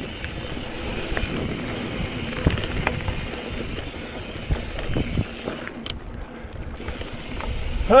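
Riding noise from a Specialized Camber mountain bike on dry dirt singletrack: Fast Trak tyres rolling over the trail, wind buffeting the microphone, and frequent small knocks and rattles as the bike runs over bumps and roots. The rider grunts "uh" at the very end.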